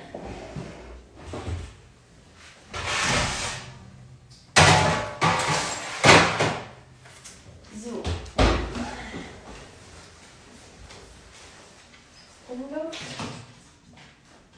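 Kitchen oven being handled while it is set to preheat: rummaging, then three sharp, loud bangs a second or two apart, as of the oven door and metal parts being knocked and shut.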